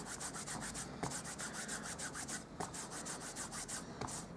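An Embossing Buddy anti-static pouch rubbed quickly back and forth over a narrow strip of cardstock: a soft, even, rhythmic swishing of many strokes a second. It is the step that takes the static off the paper before heat embossing.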